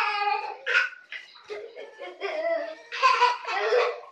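Young children laughing and giggling in high-pitched bursts, loudest at the start and again near the end.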